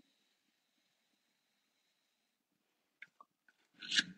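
Near silence for about three seconds, then a few faint clicks and a short breathy hiss near the end.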